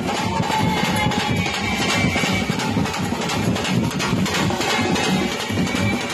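Street band music: a drum beaten steadily with sticks, with a saxophone carrying the melody over it.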